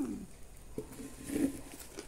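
A woman chewing a bite of crispy fried pastelito, with soft closed-mouth 'mm' hums of enjoyment.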